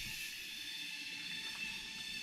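Steady, high-pitched drone of forest insects with a few thin, even tones held throughout and no breaks.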